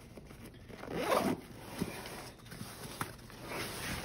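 Zipper on a side pouch of a Marom Dolphin Baloo backpack being run in a few short pulls, the loudest about a second in, with the pack's fabric rustling.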